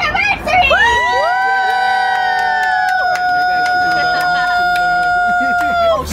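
A small group of people cheering with long held shouts. Several voices rise together about a second in, and one holds its note until the end.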